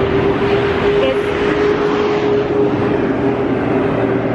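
Road traffic noise: a steady wash of engine and tyre sound from passing vehicles, with a constant low hum running through it.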